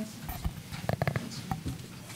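A podium's gooseneck microphone being bent into place by hand: a string of knocks and rubbing handling noises picked up directly by the microphone, with a quick run of four knocks about a second in.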